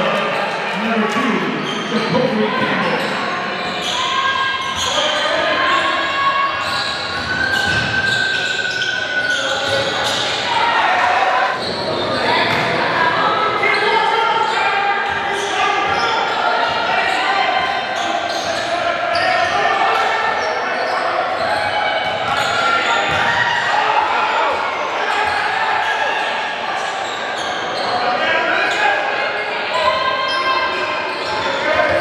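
A basketball being dribbled on a hardwood-style gym floor, bouncing repeatedly in quick impacts, under indistinct player and crowd voices echoing in a large hall.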